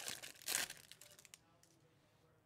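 Foil wrapper of a Bowman Chrome hobby card pack being torn open and crinkled by hand. It is a crackly rustle, loudest about half a second in, that dies away after about a second and a half.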